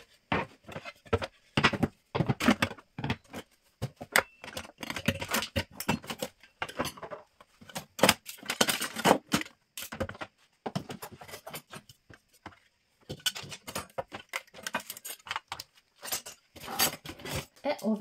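Metal and wooden kitchen utensils clinking and clattering against each other and the drawer as they are taken out, in an irregular run of knocks and clinks with a short lull a little past halfway.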